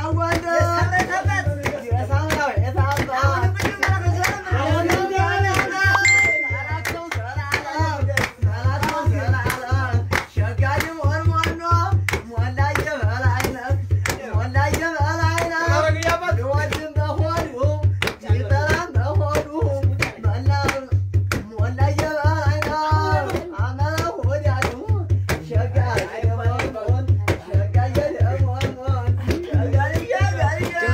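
Voices singing a wavering melody over a steady beat of hand claps, about three beats every two seconds.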